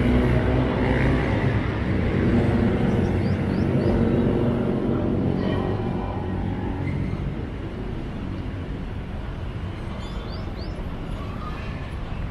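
Low rumble of city traffic from a nearby road, with a heavy vehicle's engine loudest for the first few seconds and then fading. A few short high chirps from birds about three seconds in and again near the end.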